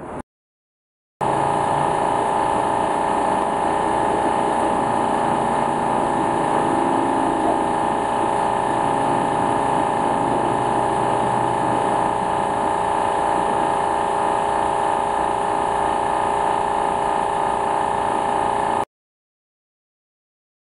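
A steady mechanical drone, like a running pump or motor, with a strong even hum. It starts abruptly about a second in and cuts off sharply near the end.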